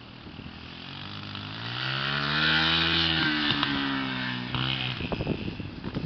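Small off-road vehicle's engine going past: it grows louder and higher in pitch over the first three seconds, then fades and drops in pitch.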